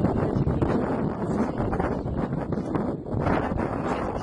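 Wind buffeting the phone's microphone: a steady, fairly loud rumble and rustle.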